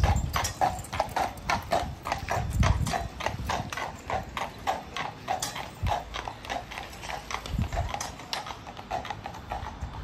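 Hooves of a pair of carriage horses clip-clopping at a walk on an asphalt street, about three sharp hoof strikes a second.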